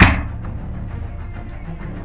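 A soccer ball strikes a metal goal crossbar once at the very start, a loud hit that rings away over about half a second, with background music running underneath.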